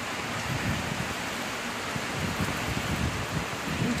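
Heavy hurricane rain pouring down, a steady, even hiss.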